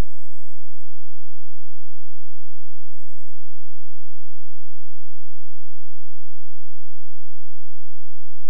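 The last guitar note dying away in the first half-second. Then near silence with a faint steady high-pitched whine from the recording chain.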